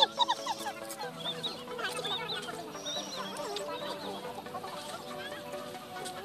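Background music playing a steady sustained chord, with many short, high chirping calls over it during the first few seconds.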